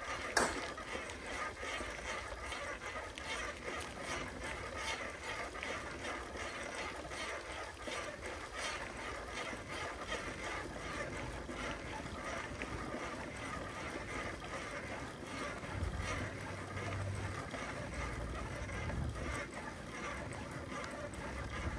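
Riding noise of a bicycle on a paved road: steady wind rumble on the microphone and tyre noise, with scattered clicks and rattles from the bike and a sharp click just under half a second in. A low hum joins briefly near the end.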